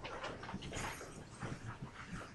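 Faint classroom room noise with a few small, scattered knocks and shuffles.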